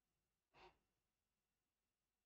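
Near silence, with one faint, short breath from the narrator about half a second in.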